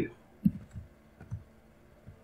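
A few soft, separate clicks, about four within a second, from keys pressed on a computer keyboard while editing in Blender. The first comes about half a second in.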